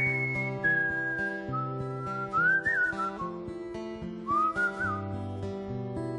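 A man whistling a slow melody into a microphone over fingerpicked acoustic guitar. The whistle opens on a long high note, steps down through a few held notes with short upward swoops, and takes up the phrase again after a brief pause about four seconds in.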